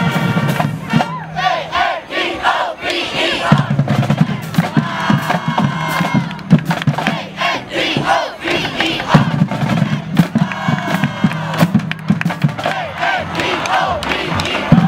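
A high school marching band shouting a chant together over drum hits, with held low notes at times, as part of its victory song.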